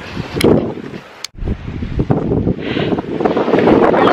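Wind buffeting the microphone of a handheld camera, a loud uneven rumble, cutting out abruptly for a moment about a second in.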